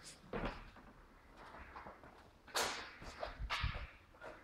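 A few short knocks and scuffs with quiet gaps between them, the loudest about two and a half seconds in and another a second later.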